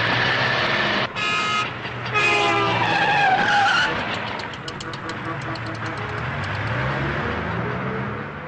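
Street traffic: vehicle engines and road noise, with a short horn toot about a second in and a longer horn sound falling in pitch from about two seconds in.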